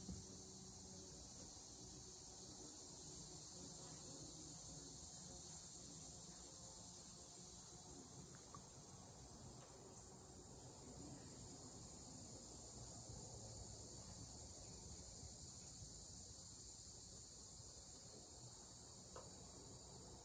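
Faint, steady high-pitched insect chorus, an unbroken shrill hum with no other sound standing out.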